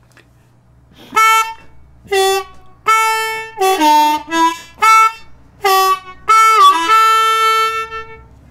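Diatonic harmonica in D, played in second position: a blues phrase of about a dozen short draw notes on holes 1 and 2, starting about a second in. Several notes are bent down so the pitch dips, and the phrase ends on one long held note.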